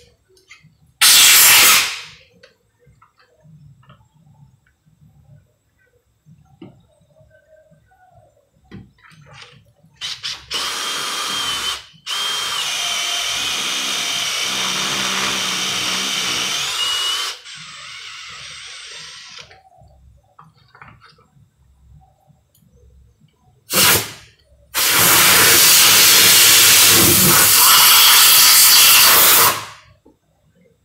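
Cordless drill driving a Timesert thread-repair reamer into a head-bolt hole in an aluminium Northstar engine block, running steadily for about seven seconds in the middle with a faint whine that rises at the end. Loud blasts of compressed air from an air blow gun come about a second in and again near the end, the last one lasting several seconds.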